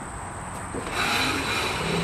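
Melex golf cart's 36-volt DC motor, run on a 12-volt jump box, spinning up about a second in and then running steadily as it turns the drivetrain. The motor works.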